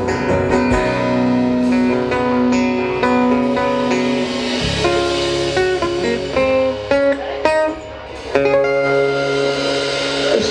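A live band plays an instrumental passage led by guitars, with an acoustic guitar being strummed. About halfway through, the low end drops away and changing single guitar notes carry on. Near the end, after a brief dip, the full band comes back in.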